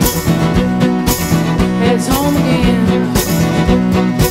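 Live country-folk song: an acoustic guitar strummed in a steady rhythm under a sung melody.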